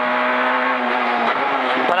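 Peugeot 208 R2 rally car's 1.6-litre four-cylinder engine at full throttle, heard from inside the cabin. It holds a steady high-revving note, then its pitch dips and changes about a second and a half in.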